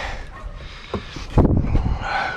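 Tools and gear being rummaged through and shifted about, with a sharp click about a second in and louder knocks and rustling near the end.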